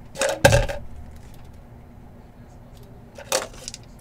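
Small hard clacks as two plastic dice are picked up and handled: a couple of sharp clicks near the start, the loudest about half a second in, then quiet until one more click a little after three seconds.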